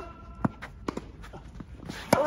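Tennis rally: a few sharp knocks of the ball being struck and bouncing, the loudest about half a second in, with a player's quick footsteps on the court between them.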